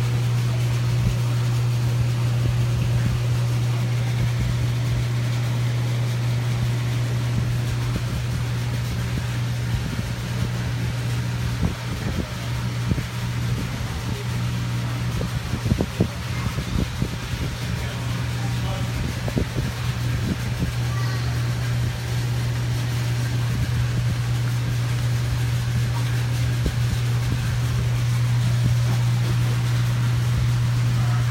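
Steady low electrical hum of aquarium equipment, the air pumps and filters running on a fish store's many tanks.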